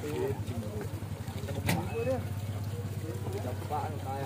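A boat's engine idling with a steady low drone under men's voices talking in the background, and one sharp knock near the middle.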